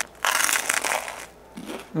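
Crisp crust of a freshly baked French baguette crunching as it is eaten: a loud crunch in the first second, then quieter crunching.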